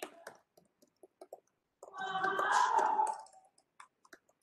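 Scattered short, irregular clicks. About two seconds in comes a louder, noisier sound lasting over a second, which is the loudest thing heard.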